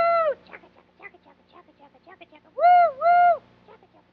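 A horn-like cartoon sound effect: two short honking toots about two and a half seconds in, after the tail of an earlier toot right at the start, with faint scattered ticks between them.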